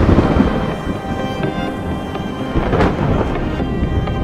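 Thunder rumbling over steady rain, with one loud clap at the start and another about three seconds in.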